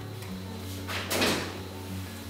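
A short noisy clatter about a second in as an oven door is opened and a metal muffin tray is put in, over background music.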